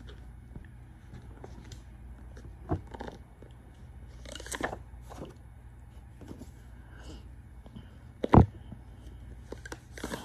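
Tarot cards being handled and drawn: scattered soft clicks and rustles, a brief rustle about four and a half seconds in, and one sharp tap of a card near the end, over a steady low hum.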